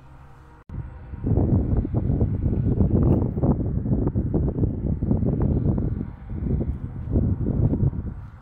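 Wind buffeting an outdoor microphone: a loud, irregular low rumble that starts suddenly about a second in after a brief faint stretch and carries on, dipping slightly near the end.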